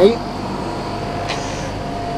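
Portable air conditioner running steadily: an even rush of air with a faint steady whine, shortly after being switched on.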